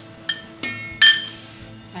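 A steel spoon clinking against a stainless steel bowl three times in quick succession, each strike ringing briefly, the last the loudest, over background music.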